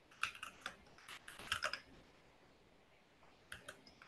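Typing on a computer keyboard, faint through a video-call microphone: quick runs of key clicks in the first two seconds, then a few more near the end.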